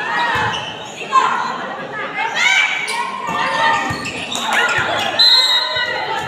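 Volleyball rally on a wooden gym floor in an echoing hall: sharp hits of the ball, a loud one about a second in, with short high-pitched squeaks of sneakers on the hardwood and players' and onlookers' voices calling out.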